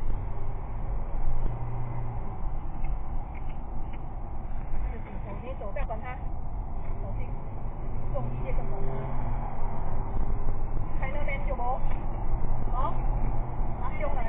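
Steady low road and engine rumble of a car driving, heard from inside the cabin. Short faint pitched sounds come through about five seconds in and again near the end.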